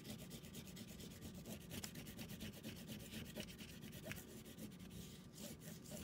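Oil pastel scrubbed hard and fast up and down across paper: a faint, rapid back-and-forth scratching.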